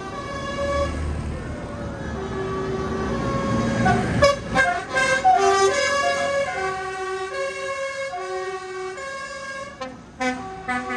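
A tune of held, horn-like notes changing pitch in steps, over the rumble of passing tractors. The engine rumble builds up to about four seconds in and then falls away while the tune carries on.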